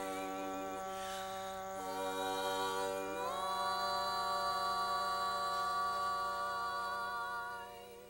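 Women's barbershop quartet singing a cappella in close four-part harmony: a few sustained chord changes, then a slide up about three seconds in to a long held chord with vibrato, which fades away just before the end.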